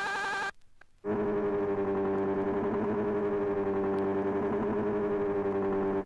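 Music from a vinyl record: a sustained synthesizer chord with a wavering, warbling pitch. It drops out about half a second in, comes back about a second in, and cuts off abruptly at the end.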